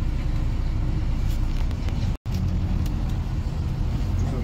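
Double-decker bus on the move, heard from inside on the upper deck: a steady low engine and road rumble. The sound cuts out for an instant a little past halfway.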